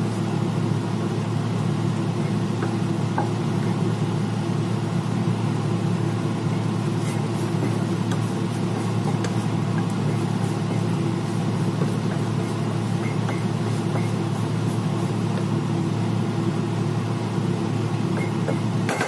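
A steady low mechanical hum, even and unchanging, with a few faint scrapes and clicks of a wooden spatula stirring food in a nonstick wok.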